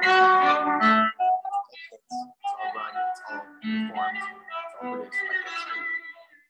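Violin and cello playing together, a melody of short separate notes.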